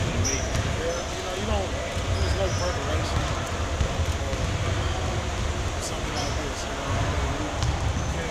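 Basketballs bouncing on a gym court, thudding irregularly and echoing in the hall, under voices talking.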